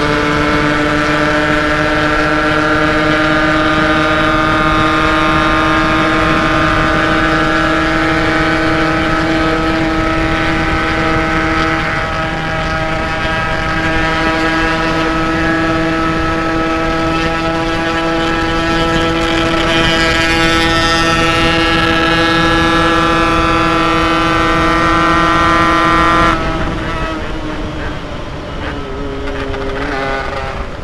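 Yamaha RX-King two-stroke single-cylinder motorcycle engine held at steady high revs under sustained throttle, heard from the rider's seat with rushing wind. About 26 seconds in the throttle shuts and the engine note drops suddenly as the bike slows.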